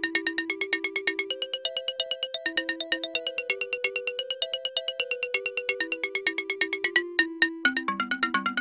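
Background music: a bright synthesizer melody of quick, evenly repeated notes, with a short break near the end before a lower phrase begins.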